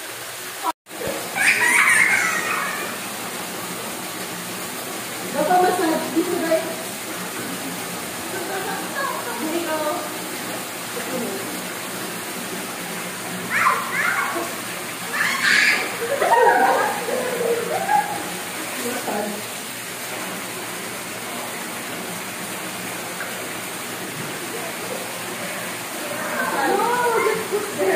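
Steady rush of water from a wall waterfall pouring into an indoor pool, with children's voices coming and going over it.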